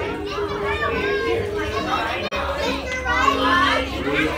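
A roomful of children talking and calling out over one another, with no single voice standing out. The sound cuts out for a moment a little past halfway.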